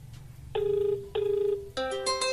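A phone's speakerphone plays a ring-back tone, two short beeps in a ring-ring pattern, showing that the outgoing call is ringing through. Near the end, music from the phone speaker begins, typical of a caller tune on the line.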